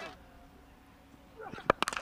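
Faint broadcast room tone, then near the end the crack of a cricket bat striking the ball: a sharp knock followed by a couple of quick clicks.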